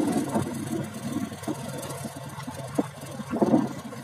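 Engine of a moving road vehicle running at a steady cruise, an even hum under wind and road noise.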